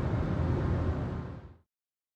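Road and tyre noise inside the cabin of a Tesla Model Y while driving: a steady low rumble with no engine sound. It fades out quickly about a second and a half in and gives way to dead silence.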